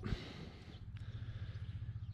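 Mitsubishi Triton pickup's engine idling with a steady low, evenly pulsing hum, and a faint click about a second in.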